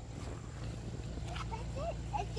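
Faint children's voices calling out briefly near the end, over a steady low rumble.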